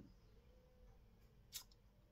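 Near silence: room tone, with a single faint click about one and a half seconds in.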